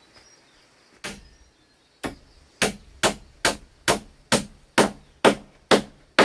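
Hammer striking a nail into a wooden strip against a beam, about ten blows: two a second apart, then a steady run of about two blows per second.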